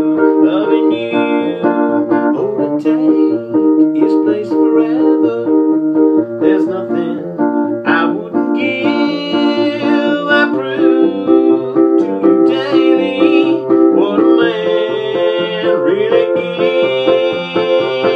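A Wurlitzer electric baby grand piano playing the chords of a country song, with a man's voice singing over it in stretches.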